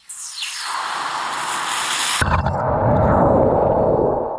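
A hot, freshly cast metal piece quenched in a jug of water. A loud hiss starts suddenly, then about two seconds in gives way to a lower, rumbling boil of steam bubbles around the metal.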